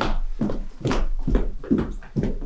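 Quick footsteps on a stage floor, about two or three steps a second: performers walking briskly off stage.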